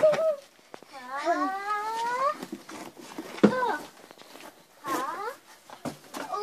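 Children's high-pitched rising cries and squeals, with sharp thumps of hands and feet striking swinging cardboard boxes; the loudest thump comes about three and a half seconds in.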